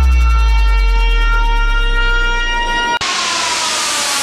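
Trap beat intro: a heavy 808 sub-bass drop gliding down in pitch under a sustained synthetic siren tone. About three seconds in, a loud wash of white-noise FX cuts in, with the siren tone falling slowly beneath it.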